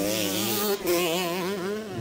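Motocross bike engine buzzing through a corner, its pitch rising and falling with the throttle.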